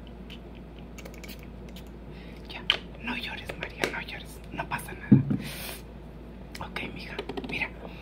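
Clicks and knocks of makeup bottles being handled and set down on a table, with a short hiss of a spray bottle misting water about five and a half seconds in.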